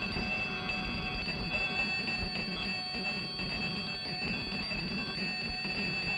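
Handbell rung rapidly and without pause, its metallic ringing tones running together into a steady jangle.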